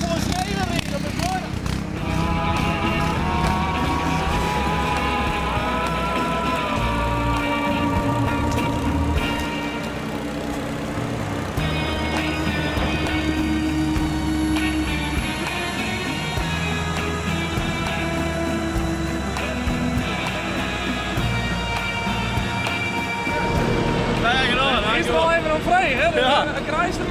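Background music with long held notes, laid over low, steady engine noise from farm machinery.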